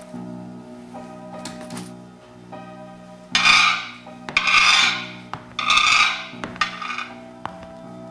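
Three loud rasping, hissing strokes about a second apart, then a fainter fourth, over steady background music.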